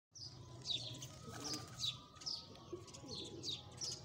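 A bird chirping: short, high notes that each fall in pitch, repeated about twice a second, fairly faint.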